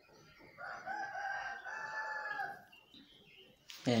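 One long animal call, held at a steady pitch for about two seconds, starting about half a second in.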